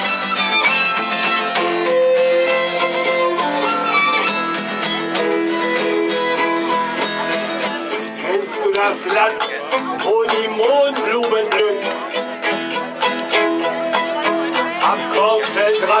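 A fiddle playing a tune in long held, bowed notes, the lead-in before the singing starts.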